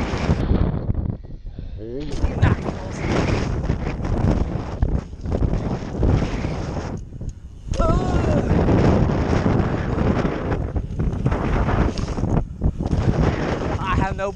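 Wind rushing over the microphone and BMX tyres rolling on the track surface as the bike is ridden at speed, with a few short vocal sounds about two seconds in and again about eight seconds in.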